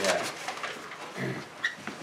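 A short spoken "yeah", then a low murmured voice about a second in and a couple of small clicks near the end, in a small room.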